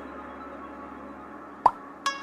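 Soft, sustained background music, then near the end a single short, loud pop with a quick upward pitch glide, a chat-message pop-up sound as a new support-agent message arrives.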